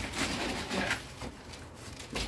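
Rustling and light knocks of cardboard and packing material being handled, busiest in the first second and then quieter.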